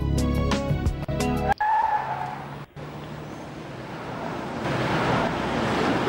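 Television commercial soundtrack: music with a beat that cuts off about a second and a half in, followed by a short gliding tone and a rushing noise that swells up to a peak near the end.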